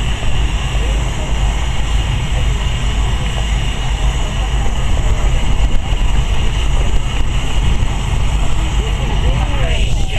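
Outdoor ambience: a steady low rumble with a murmur of distant voices.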